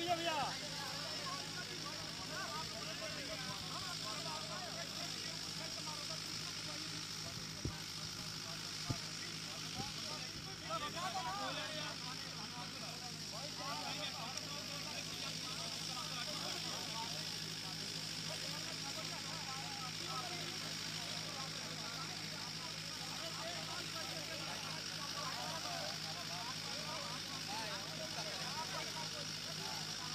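Faint, indistinct voices of a group of men talking among themselves over a steady low mechanical hum, with a couple of small knocks partway through.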